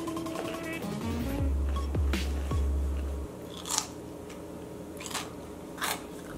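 Background music with a deep bass tone in its middle, over which someone crunches into a crisp pickle: four short bites in the second half.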